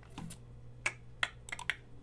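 Computer keys and mouse buttons clicking: about six short, sharp clicks, unevenly spaced, most of them bunched in the second half.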